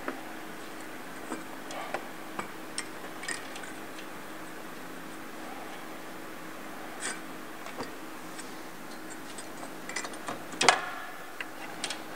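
Scattered light clicks and taps of a finned transmission cooler and its hose fittings being handled against the front of a radiator, with one louder knock near the end, over a steady low hum.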